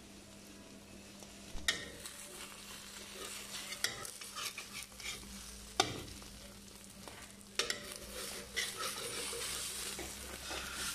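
Egg and sliced Chinese sausage sizzling in a hot wok. A metal spatula scrapes and knocks against the pan a few times, starting about a second and a half in.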